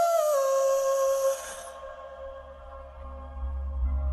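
Slowed, reverb-heavy pop music: a long held note dips slightly in pitch near the start and fades out, while a deep bass swells in and grows louder toward the end.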